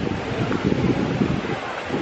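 Steady rushing outdoor noise with a murmur of background voices.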